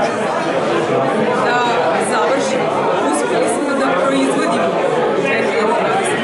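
Speech over background chatter from other people in a large room.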